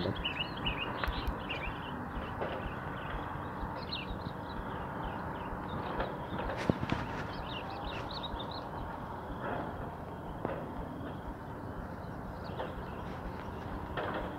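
Small birds chirping in short bursts a few times over a steady low background hum.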